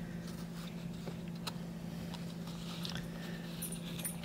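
Faint sliding and rustling of glossy trading cards being shuffled by hand, with a few soft clicks and one sharper tick about a second and a half in, over a steady low hum.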